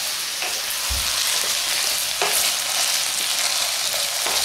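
Cauliflower florets and potato pieces sizzling in hot oil in a frying pan as they are stirred to coat the cauliflower in the oil. The sizzle is steady, with a couple of sharper knocks from the stirring.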